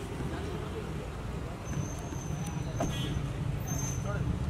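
A car's engine running steadily at idle, a low rumble, with a few sharp clicks about two to three seconds in.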